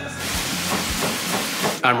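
Food sizzling in a frying pan, a steady hiss that cuts off suddenly just before the end, with a few light knife chops on a cutting board.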